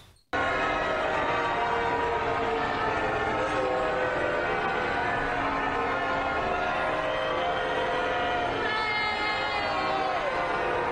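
Church bells pealing over a crowd booing, starting suddenly a moment in and running steadily on.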